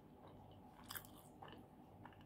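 Close-up mouth sounds of a person chewing a crusty pizza slice, with a few short crisp crunches about a second in and again shortly after.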